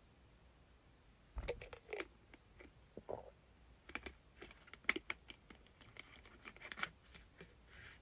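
Soft, irregular clicks and taps of a drink bottle being handled and its cap twisted shut after drinking, starting about a second and a half in.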